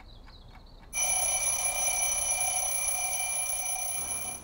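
A metal bell ringing continuously and evenly, like an alarm-clock bell, starting about a second in after a faint high warbling sound.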